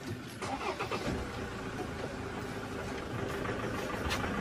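A vehicle's engine starts about a second in and then runs steadily with a low rumble.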